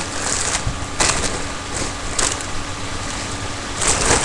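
Steady rustling noise with a few sharper crackles from a foil helium balloon being handled close to the microphone while its valve is being pulled open.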